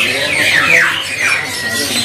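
Caged songbirds chirping: a quick run of about five short, falling notes in the first half, with background chatter.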